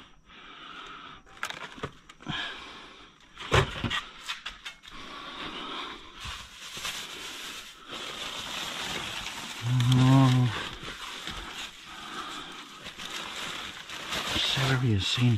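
Plastic bags and packaged food rustling and crinkling as a gloved hand rummages through a dumpster full of produce, with a few sharp knocks early on. A short vocal hum or grunt, the loudest sound, comes about ten seconds in.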